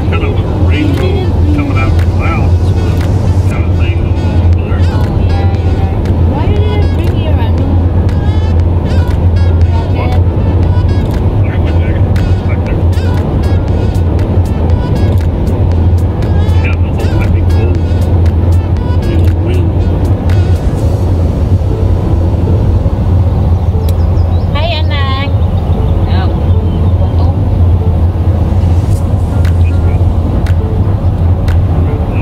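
Steady low drone of a car moving at highway speed, heard inside the cabin, with music and snatches of voices over it.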